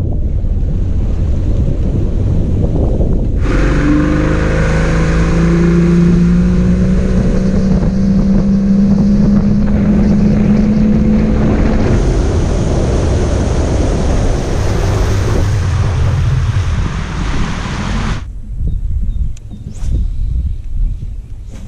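Bass boat's outboard motor running the boat across open water, its low pitch rising slowly as it gathers speed, under heavy wind noise on the microphone and water rushing past the hull. It begins as a low rumble, comes in suddenly at full hiss a few seconds in, and cuts off abruptly near the end.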